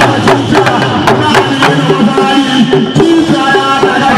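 Hausa kalangu talking drums played in a fast rhythm with curved sticks, quick strikes with the drum pitch bending up and down.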